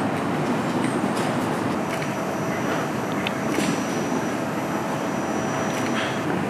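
Steady low rumbling outdoor noise in a city side street, with a faint steady whine from about two seconds in until near the end, and a few faint clicks.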